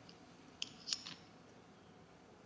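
Three short, sharp clicks about half a second to a second in, the middle one the loudest, over faint room tone.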